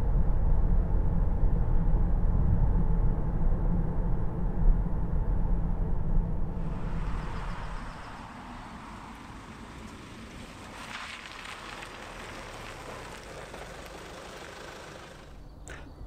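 A car on the road: a loud low rumble of engine and tyre noise for about the first seven seconds, then a sudden change to a much quieter outdoor sound of a car moving slowly.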